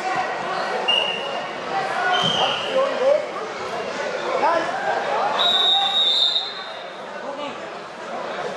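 Wrestling hall full of chattering and calling voices, with a referee's whistle: two short blasts in the first few seconds and one long blast about five and a half seconds in. A dull thud comes about two seconds in.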